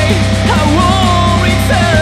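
Heavy metal band playing a song at a loud, steady level: drums, guitars and bass together, with a melody line that bends up and down over them.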